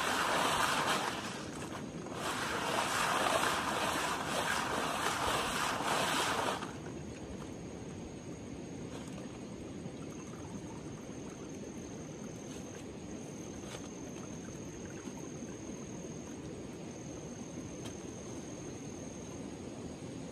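Water sloshing and splashing as a round pan of river gravel is swirled and dunked in shallow river water, in two spells that end about six and a half seconds in. After that only the low steady rush of the stream, with a few faint clicks.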